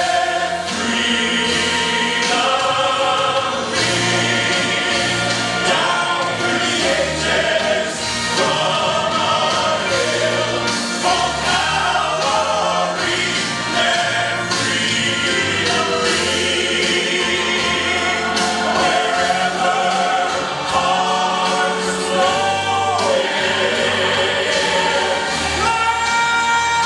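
Male gospel vocal group singing in close harmony over instrumental backing, with no breaks.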